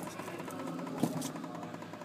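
Rubber mounting bushing and its metal sleeve being worked by hand out of a Ford 6.0L Powerstroke FICM's metal housing, with one sharp click about a second in, over a steady low background hum.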